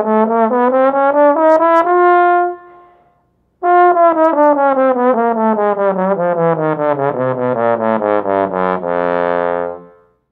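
Tenor trombone playing a slurred register exercise: quick notes, about four a second, climb to a held high note, then after a short breath descend step by step to a held low note near the end. The player keeps a very relaxed airstream low in the range and slightly intensifies the air as he goes higher.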